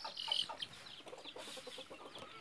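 Faint clucking of chickens, a few short calls after the talk stops.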